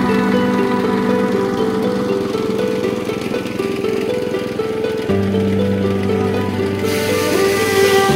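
Background music: a melody of short stepped notes over held bass notes, with the bass changing about five seconds in.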